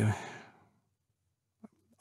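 A man's voice trailing off into a breathy sigh that fades out within about half a second, then near silence except for a faint mouth click shortly before he speaks again.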